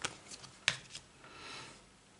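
A tarot card being laid down on a wooden tabletop: one sharp tap about two-thirds of a second in, then a brief soft slide as it is pushed into place.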